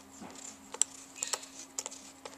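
A handful of sharp little clicks and ticks as an auxiliary camera is fitted and screwed onto the mounting post of a video endoscope's handpiece.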